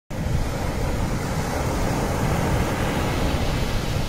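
Sea water sloshing and washing around a camera held at the waterline, a steady rush of water noise with a low rumble.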